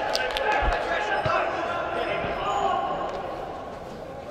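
Players shouting to each other in a large echoing indoor hall, one long call held for a couple of seconds, with a few sharp knocks of a football being kicked in the first two seconds.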